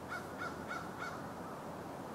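Pileated woodpecker calling: a series of four short, clear notes, about three a second, in the first second.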